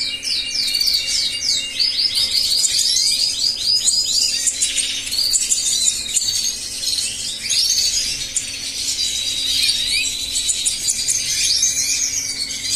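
European goldfinches, adults and fledglings in an aviary cage, chirping and twittering in many overlapping high calls. About two seconds in there is a fast run of repeated slurred notes. A faint steady hum sits underneath.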